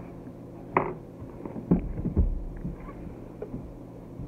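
Cardboard mystery box being opened and its contents handled: a few short knocks and rustles, with a low thump about two seconds in.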